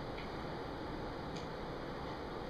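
Room tone through the microphone: a steady low hiss with two faint ticks about a second apart.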